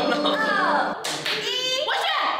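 A man sings a short snatch of a song, and about a second in hand clapping breaks out with excited voices.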